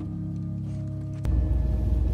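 Background music with long held tones cuts off suddenly a little over a second in. It gives way to a loud, steady low rumble of the van running.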